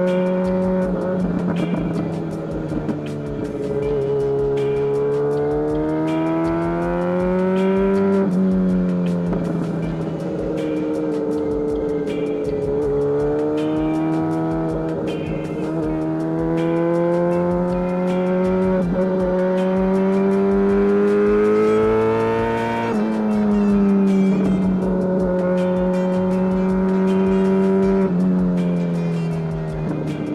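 2017 MV Agusta F4 RR's inline-four engine, breathing through stainless headers and an SC Project exhaust, pulling through a run of bends. The engine note rises under throttle and falls away when the throttle is rolled off, with several sudden pitch changes at gear changes and a long slowing fall in the last seconds.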